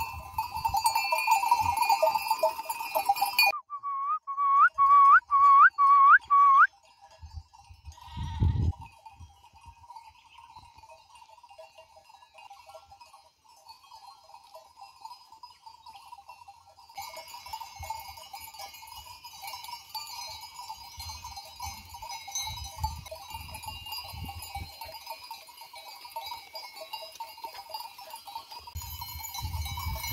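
Bells on a grazing flock of sheep ringing steadily, loudest in the first few seconds, then fainter. Between about four and seven seconds in there is a run of five quick rising notes, and a low thump comes at about eight seconds.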